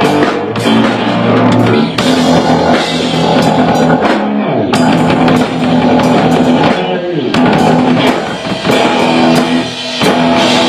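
Rock band playing live: a guitar over a drum kit, loud and continuous.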